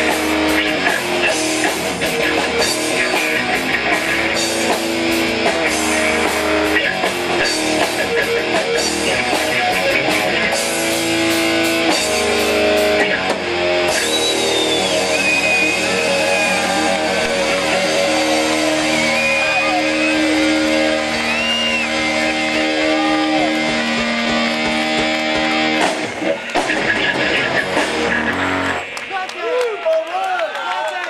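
Live rock band with electric guitars and drums playing loudly through a PA. The song ends about a second before the end, and crowd cheering follows.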